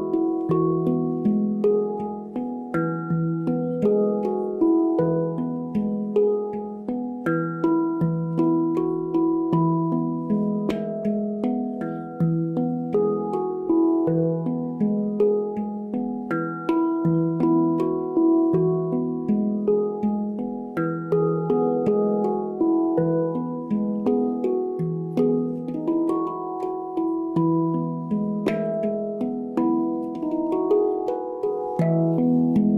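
A Pan Smith steel handpan played solo by hand: a flowing melody of fingertip-struck notes, each ringing on, over a steady pulse of deeper tones.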